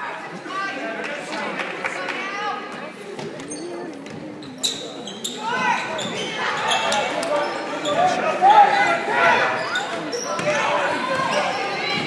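A basketball bouncing on a hardwood gym floor, with voices shouting and echoing around the gym. The sharp bounces start about five seconds in, as play speeds up.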